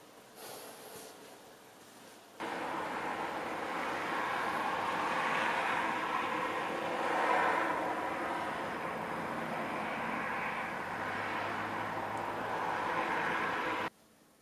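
A steady, noisy outdoor rush that starts suddenly about two and a half seconds in, swells and eases slowly, and cuts off abruptly at the end, with a low hum joining it near the end.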